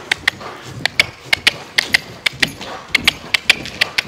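Racehorse cantering on the lunge in a sand arena: a run of sharp clicks and knocks from hooves and tack, often in close pairs about every half second.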